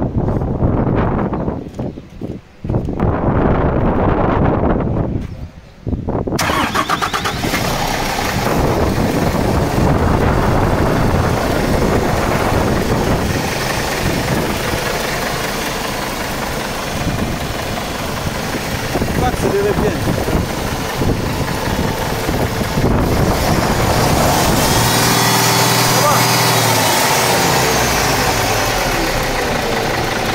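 IVECO Stralis truck's diesel engine being cranked, with two short breaks, then catching about six seconds in and running steadily at idle. The turbo's variable-geometry actuator has just been freed after seizing.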